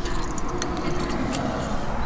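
Small metallic clicks and clinks of a key and the chrome lock of a locking hitch pin being handled in the hand, over a steady low rumble.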